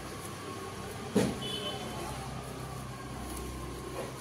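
A hand broom brushes over carpet and along a sliding-door track in a few scattered strokes, over a steady low hum. A sharp knock comes about a second in.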